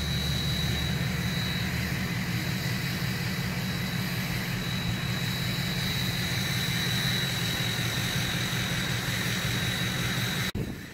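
A steady low mechanical drone, like an engine running, with a thin steady high tone over it. A deeper layer of the drone drops away about two seconds in.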